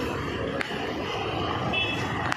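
A Jeep SUV driving slowly past close by, its engine and tyres running steadily over the street noise.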